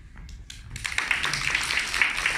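A few scattered claps, then audience applause breaking out and filling in about a second in.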